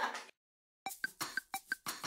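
A moment of laughter that cuts off into dead silence, then background music starts a little under a second in: a quick, steady beat of short, clicky percussive hits with a light ring to each.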